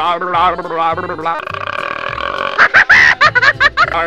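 Cartoon soundtrack: a repeated high-pitched cartoon-voice chant over a pulsing bass line, broken about a second and a half in by a steady hiss and then a quick string of loud, pitch-sliding cartoon vocal effects before the chant resumes.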